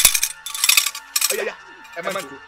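Metal handbell shaken in short bursts, a bright jangling ring at the start and again under a second in, with brief fragments of a man's voice between.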